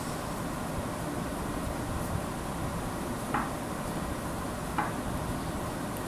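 Steady low room noise with the faint sounds of hands kneading soft biscuit dough in a glass bowl, and two brief faint sounds about three and a half and five seconds in.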